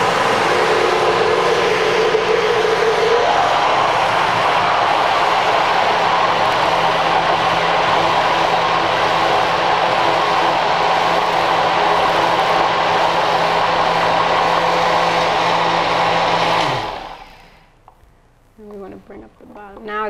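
Countertop blender motor running steadily under load, blending a thick batter of overripe bananas and sunflower seeds; its tone shifts about three seconds in. Near the end it is switched off and winds down, its pitch falling.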